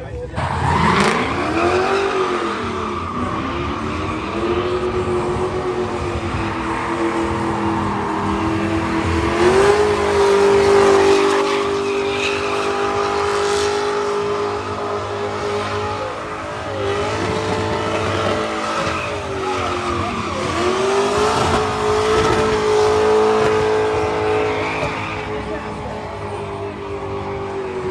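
Drift car's engine held high in the revs, dipping and climbing again several times as the car slides sideways, with tyres squealing on the pavement.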